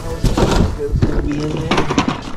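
Cardboard boxes and plastic-windowed toy packaging being handled and set down: repeated short rustles and knocks. Brief wordless voice sounds come about a second in.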